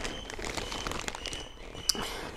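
Plastic courier mailer bag crinkling as it is handled, with a sharp click near the end.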